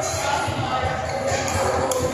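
Badminton doubles rally in a large echoing sports hall: sharp racket strikes on the shuttlecock, one near the end, and players' footwork on the court, over steady spectator chatter.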